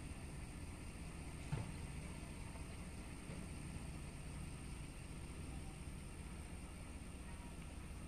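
Ford F-150 engine idling, heard faintly and steadily from inside the cab, with one light click about a second and a half in.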